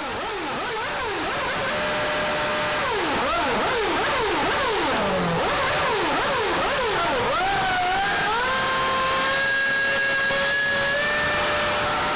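Formula 1 racing engine being revved in repeated quick blips, its pitch rising and falling, then held at a steady high pitch that creeps up slightly over the last few seconds.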